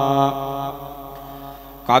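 A male voice chanting Pali pirith holds the drawn-out last syllable of "dukkhā" on one steady pitch. The note drops away about a third of a second in and fades, and the next chanted phrase starts right at the end.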